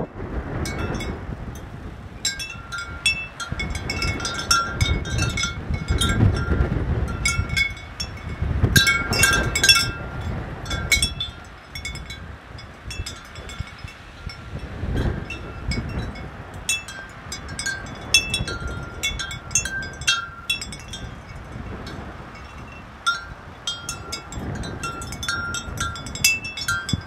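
Wind chimes ringing irregularly at a few fixed pitches as gusts stir them, with storm wind buffeting the microphone in surges.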